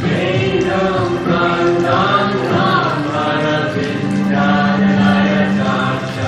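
Kirtan: a group of voices singing a devotional chant together, with a long held low note in the second half.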